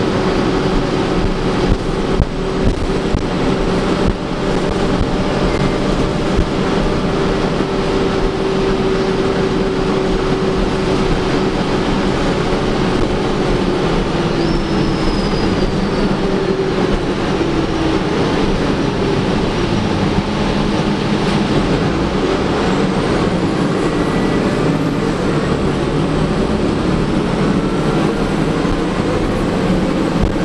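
2011 Gillig Advantage transit bus running, heard from inside the passenger cabin: a steady drivetrain drone mixed with road noise. A whine in it slides down in pitch about halfway through.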